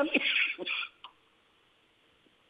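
A man's voice heard over a telephone line, ending in a short breathy sound, then about a second of near silence with one faint click.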